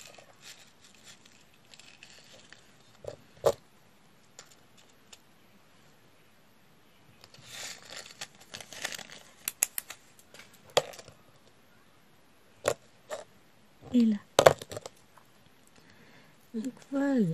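Scattered small plastic clicks and taps of diamond-painting work: the drill pen and resin drills against the canvas and plastic tray, with a rattling patch of drills about eight to eleven seconds in. A brief murmur of a woman's voice comes near the end.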